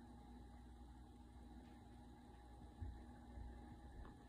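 Near silence: the low steady hum of a running desktop computer, with one soft low thump a little before three seconds in.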